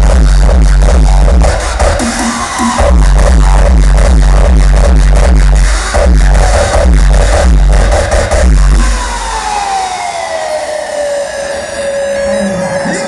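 Hardstyle electronic dance music played loud over an arena sound system, with a pounding kick drum. About nine seconds in the kick drops out, and a synth tone slides down in pitch and settles into a held note.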